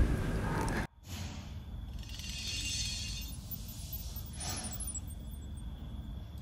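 Quiet room, with a short noisy breath about four and a half seconds in from a person eating very spicy food.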